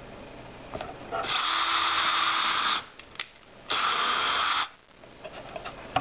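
Cordless drill with a 1/16-inch bit boring through a stack of paper pages into scrap wood. It runs in two bursts, one of about a second and a half and then one of about a second.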